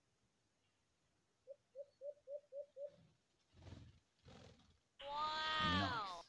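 A dove (alimokon) cooing in a quick run of about seven short low notes. Near the end comes a louder drawn-out animal call that falls in pitch.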